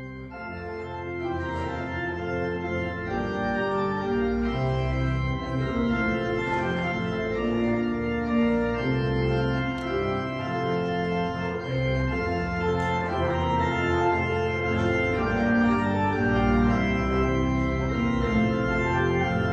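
Church organ playing a recessional: sustained chords that come in suddenly at the start and then carry on steadily.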